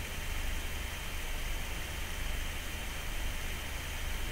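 Steady hiss with a low hum underneath and nothing else: the background noise of the recording, with no sound from the cleaning itself.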